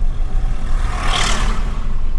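Steady engine and road rumble inside the cabin of a Renault Triber with its three-cylinder petrol engine, driving at about 30 km/h, as a tractor with a trailer is passed: its noise swells and fades about a second in.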